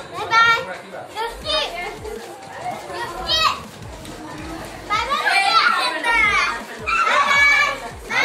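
Young children's high-pitched voices calling out and chattering, with a sharp rising squeal about three seconds in and several voices at once, louder, from about five seconds on.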